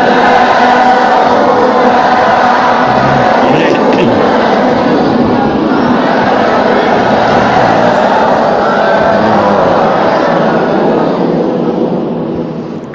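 A large group of voices reciting Quran verses together in unison, a class repeating the teacher's recitation in a continuous, dense chorus that eases off slightly near the end.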